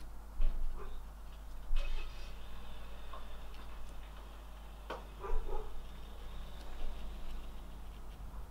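A few light clicks and taps from a paintbrush being dipped and tapped against the watercolour palette and water pot, over a low steady hum.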